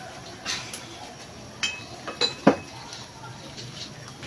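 A few sharp clinks and knocks of a cooking utensil against a metal frying pan, the loudest about two and a half seconds in, some leaving a brief metallic ring.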